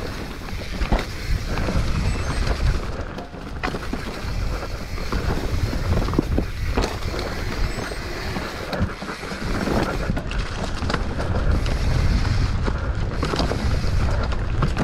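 Wind buffeting the microphone of a mountain bike descending a fast dirt trail, a continuous low rumble with knocks and rattles from the bike going over bumps.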